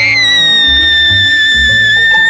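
A woman singing one long, very high held note that slides up into pitch at the start and then holds steady, over background music with a bass line.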